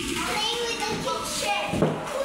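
Children's voices chattering and calling out at play, with a single short knock near the end.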